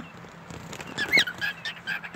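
Cockatiel chattering in a string of short, high chirps, starting about half a second in.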